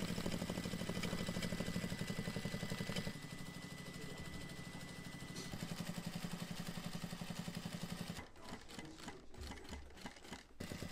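Industrial sewing machine stitching along the edge of a leather cover in a fast, even rhythm. The stitching stops about eight seconds in, and a low thump follows near the end.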